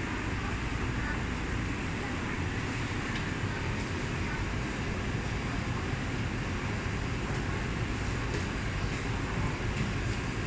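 Steady hum and hiss of a Taipei Metro C371 train standing at an underground platform with its doors open, even and unchanging, with no distinct events.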